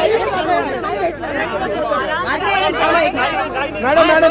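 Several people talking over one another at close range: the chatter of a crowd pressing around someone.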